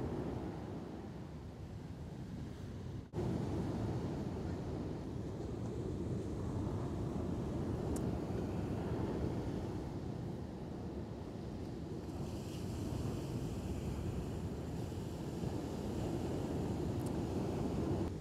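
Steady rushing of ocean surf mixed with wind buffeting the microphone. The noise breaks off for an instant about three seconds in.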